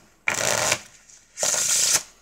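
A deck of playing cards being riffle-shuffled twice on a cloth mat: two quick rattling riffles, each about half a second long, the second starting about a second and a half in.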